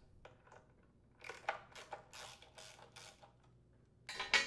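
Faint ratcheting clicks of a socket wrench backing out a screw from a small engine's blower housing. About seven short strokes come from about a second in until just past three seconds.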